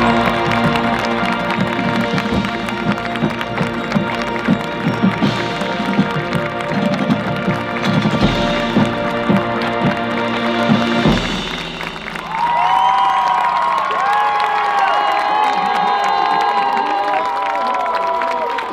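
Marching band of brass, winds and percussion playing loud held chords over drum hits, cutting off about eleven seconds in. The crowd then cheers, whoops and applauds.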